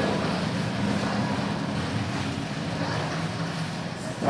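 A steady electroacoustic noise drone: an even wash of noise over a low hum, easing slightly quieter toward the end.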